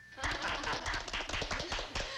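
A small group of people applauding, with quick, uneven hand claps and voices mixed in.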